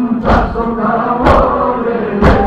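Group of mourners chanting a mourning lament (noha) together, with loud rhythmic thuds of matam chest-beating about once a second, twice here.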